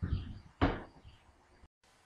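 Two thumps about half a second apart, the second one sharper and louder, each dying away quickly.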